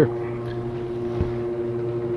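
Greenhouse ventilation fan running with a steady hum, a low drone with a higher, even tone above it.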